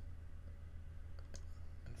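A few faint computer mouse clicks over a steady low hum from the recording.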